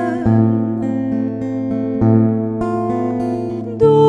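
Acoustic guitar playing a slow lullaby: plucked notes ring over a low bass note struck about every two seconds. A woman's singing voice comes back in near the end.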